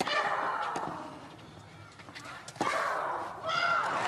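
A woman tennis player's loud vocal grunt as she strikes the ball, heard twice about two and a half seconds apart. Each grunt starts with the sharp crack of the hit and falls in pitch.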